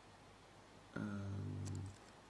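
A man's drawn-out hesitation sound "uh", held for about a second and starting halfway in, after a second of quiet room tone.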